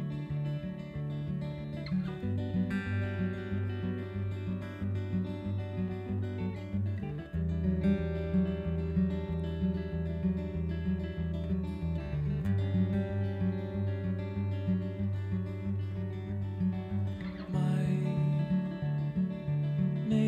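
Live band playing an instrumental intro: strummed acoustic guitar with electric guitars, and a bass guitar coming in about two seconds in with long low notes that change every few seconds.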